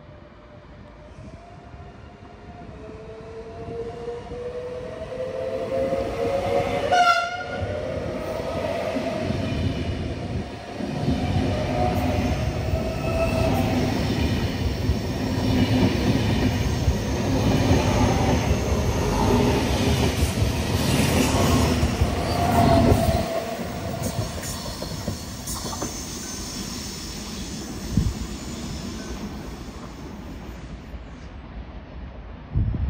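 ETR 700 Frecciarossa high-speed electric train approaching with a rising whine, giving a short horn note about seven seconds in. It then runs past close by with a loud rumble and whine for about fifteen seconds, and fades near the end.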